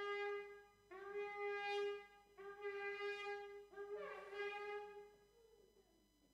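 A shofar blown in four long blasts in a row, each scooping up in pitch as it starts. The last blast wavers and falls away a little past the five-second mark.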